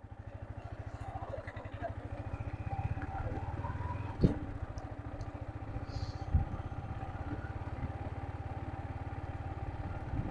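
A Yamaha MT-15 V2's 155cc liquid-cooled single-cylinder engine running while the bike is ridden, a steady low pulsing that grows a little louder over the first few seconds. Two brief knocks come about four and six seconds in.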